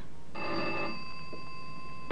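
Motor-workshop background sound effect from an old radio drama: a steady high whine of several pitches sets in about a third of a second in and holds level.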